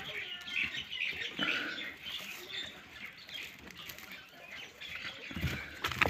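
A hand rustling and crackling through chopped maize silage and the plastic bag sheeting around it, with a dull bump near the end.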